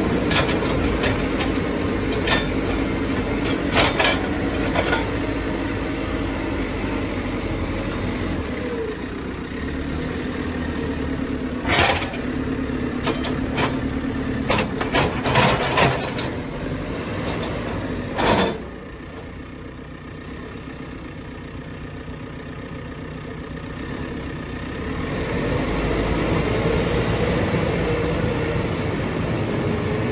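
JCB 3CX backhoe loader's four-cylinder diesel engine running under load while the front loader bucket digs into a dirt pile, with repeated sharp clanks of the bucket and stones through the first half. A little past halfway the sound drops lower and quieter. It builds again near the end as the engine revs up.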